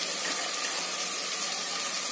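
Onions, tomato and spices sizzling steadily in hot ghee in a clay pot.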